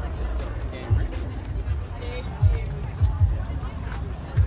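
Outdoor crowd chatter in the background, with several low thumps of wind and handling on a handheld microphone as the person holding it walks.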